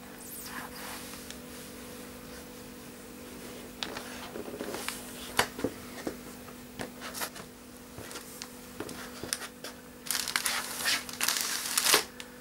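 Cellophane flower-bouquet wrapping crinkling and crackling as a sheepskin boot presses and crushes the bouquets: scattered crackles through the middle, then a dense burst of crinkling near the end. A faint steady hum runs underneath.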